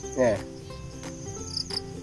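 Insects calling in a steady high-pitched trill, briefly louder near the end.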